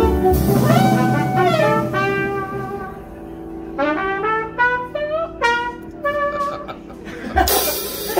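Live small-group jazz: trumpet and saxophone play phrases of held and bending notes over a quieter band, with the drums dropping back. About seven seconds in a loud cymbal crash brings the full drum kit back in.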